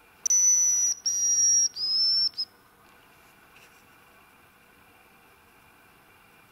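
A hazel grouse call: three long, high, thin whistles, the third rising, and a short final note, all within the first two and a half seconds.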